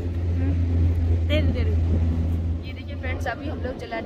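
A steady low hum running throughout, with snatches of voices speaking over it about a second in and again in the second half.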